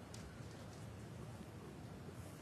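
Faint, steady background hush of a quiet snooker arena between shots.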